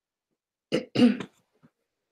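A person clearing their throat: two quick, rough bursts about a second in, then silence.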